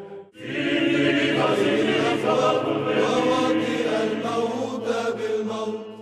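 A male choir singing Orthodox church chant, several voices on long held notes over a steady low drone. It starts abruptly just after the beginning and fades out at the very end.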